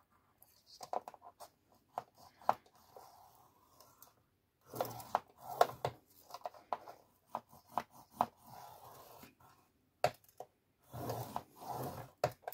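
A plastic folder tool scoring fold lines into cardstock on a grooved scoring board: several short, scratchy drags of the tool along the groove, with small clicks and taps as the card and tool are set in place between strokes.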